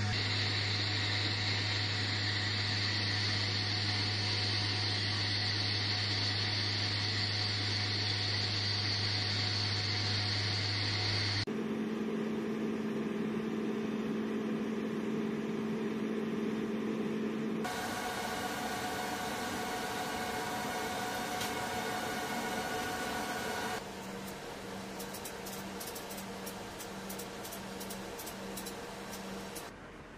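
Steady low drone of an MC-130J Commando II's four turboprop engines, heard inside the aircraft in flight; it stops abruptly about eleven seconds in. After it come other steady machinery hums and noise that change at sudden cuts, with a quieter stretch near the end carrying a faint regular pulsing.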